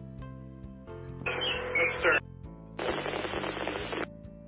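Background music with held notes, broken twice by a burst of two-way radio hiss about a second long that starts and stops abruptly, each an open transmission with no words made out.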